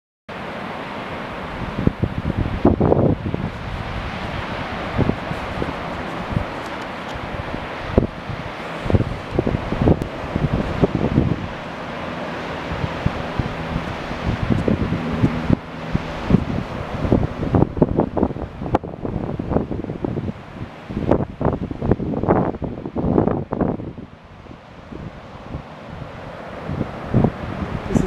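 Wind buffeting the microphone in irregular gusts over the steady wash of surf breaking on a sandy beach.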